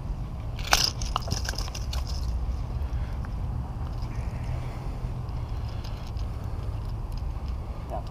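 Steady low outdoor rumble. About a second in there is a sharp click, followed by a short hiss.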